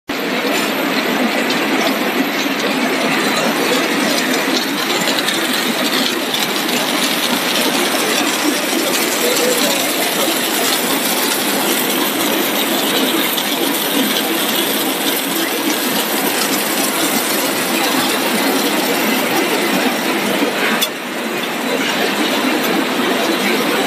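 Tortilla-chip production line machinery running: a steady, dense mechanical clatter of rollers, motors and conveyors with many fine clicks, broken by a short dip near the end.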